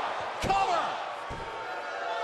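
A referee's hand slapping the wrestling ring mat twice during a pin count, a little under a second apart.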